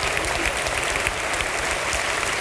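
Congregation and choir applauding, a steady stream of clapping.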